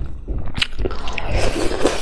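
Close-miked wet chewing and biting of saucy meat, a few sharp smacking clicks followed by a longer squishy stretch in the second half.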